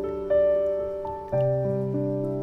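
Background piano music: a few notes struck and left to ring, with a low bass note coming in a little past halfway.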